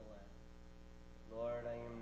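Steady electrical mains hum through a pause. A man's voice begins speaking about a second and a half in.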